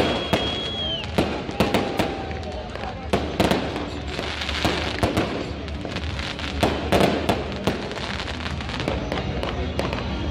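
Fireworks display: irregular bangs and crackles of aerial fireworks bursting, coming in clusters with short gaps between them. A high steady whistle sounds in the first second and drops away about a second in.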